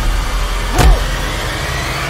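Horror-film sound design: a loud low rumble with a dramatic hit whose pitch drops sharply, the hit loudest just under a second in.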